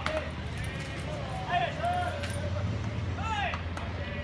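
Baseball players calling out across the field during infield and outfield practice: drawn-out shouts that rise and fall in pitch, with no clear words. A few sharp knocks are mixed in, over a steady low rumble.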